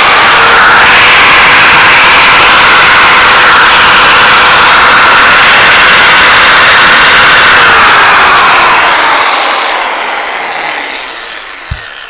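Makita GA6010 150 mm angle grinder (1050 W, 10,000 rpm) running free with no load, its motor and cooling fan giving a strong, steady whine. About eight seconds in it is switched off, and it winds down with a falling pitch over the next few seconds.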